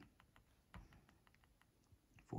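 Near silence with a few faint, sharp clicks and one soft knock a little under a second in: a fingertip tapping the front buttons of an AGPTEK A19X MP3 player.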